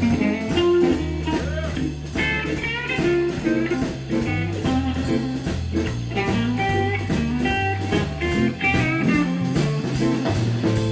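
Live electric blues band playing an instrumental stretch: electric guitar lines over drums and a low bass line, with an even cymbal beat about three times a second.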